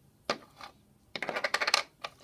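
A small round hard-plastic toy disc knocking and rattling on a floor, like a dropped coin: one tap about a quarter second in, then a quick rattling clatter a second in that stops just before the end.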